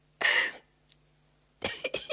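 A person coughs once, a short, sharp, noisy burst about half a second long. A quick run of short voice sounds starts near the end.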